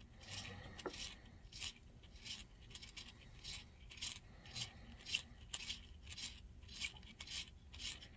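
Hand chamfering and deburring tool twisted in the mouth of a brass .338 Win Mag rifle case: a faint, rasping scrape of steel on brass, repeated about two to three times a second.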